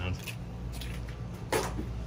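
DeLorean DMC-12's PRV V6 engine idling steadily, with a short click or knock about a second and a half in.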